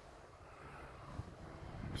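Faint low rumble of wind on the microphone, with one small knock about a second in.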